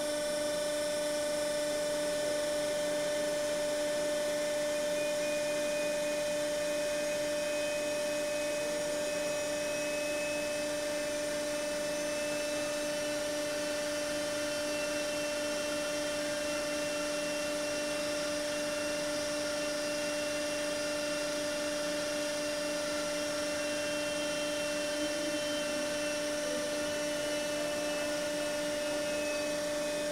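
Bend-test press running with a steady hum as its round former slowly forces welded test strips into a U-bend: a guided bend test of the welds.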